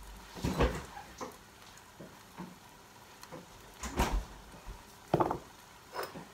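Kitchen handling noises: a few separate knocks and clunks of things being moved and set down, about half a second in, around four seconds and just after five seconds.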